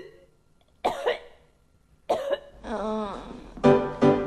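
A couple of short coughs, a wavering voiced sound, then music starting near the end with strong pitched notes about twice a second.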